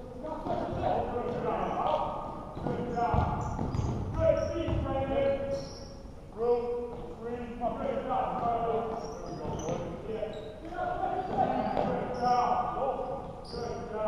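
Indistinct voices of players and spectators in a large gymnasium, with a basketball bouncing on the court during play.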